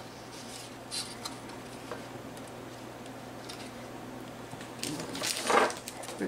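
Faint handling sounds of a cardstock sheet on a plastic photo frame on a countertop: a few light taps, then louder rustling and clatter near the end as the sheet is lifted off the frame.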